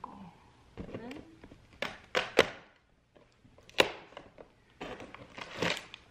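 Handling of small plastic toy pieces and cardboard advent calendar packaging: a few sharp clicks and knocks, then a short rustle near the end.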